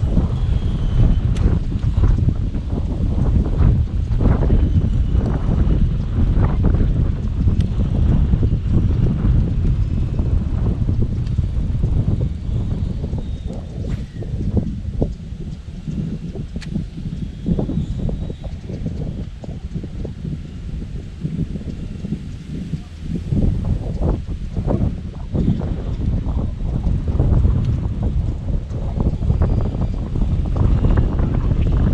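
Wind buffeting the boat-mounted camera's microphone, a loud gusty low rumble that eases off for several seconds in the middle and then picks up again.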